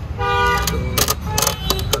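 A vehicle horn gives one short, steady toot near the start, over a low rumble of street traffic, followed by a few sharp clicks.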